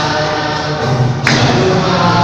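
A church congregation singing a Telugu Christian song together, many voices at once, with one sharp percussive beat a little past halfway.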